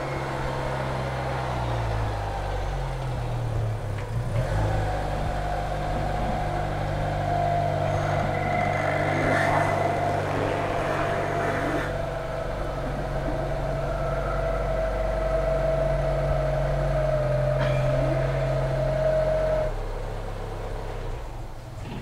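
A 1979 Honda Prelude's 1.6-litre four-cylinder engine running as the car is driven slowly, its pitch rising and falling in the first few seconds, then a steady hum with a thin high note over it. It drops quieter about twenty seconds in.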